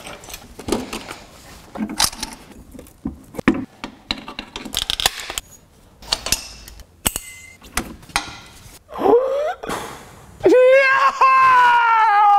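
Scattered clicks, knocks and clinks of welding cables, a TIG torch and brass gas fittings being handled and connected on a welder cart. About ten and a half seconds in, a man's long wavering wail cuts in, the loudest sound here: an exasperated cry at a TIG welder that won't work.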